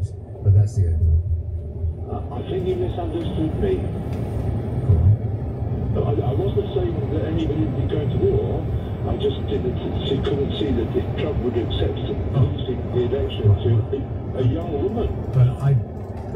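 A radio broadcast playing through a car's speakers, with voices and some music, over the steady low rumble of a car driving on a motorway. From about two seconds in the radio sound is thin and cut off at the top, like a phone-line or narrow-band feed.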